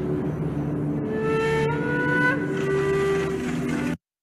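Film soundtrack playing: a dense rushing noise with several long held tones layered over it, cut off suddenly at the end as the clip is paused.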